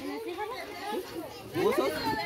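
Overlapping voices of adults and children talking at once, with children at play; a nearer voice grows louder near the end.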